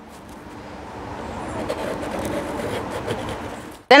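Pen tracing around a wooden disc on clear contact paper: a scratchy scraping with plastic sheet rustling that grows louder, then stops abruptly near the end.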